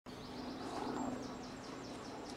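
Outdoor ambience with small birds chirping: a run of short, quick, downward-sliding chirps, a few per second, over a steady background hiss and a faint low hum.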